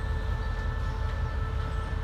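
QSY-class diesel-electric locomotive approaching slowly, its engine giving a steady low rumble under an even, multi-toned whine.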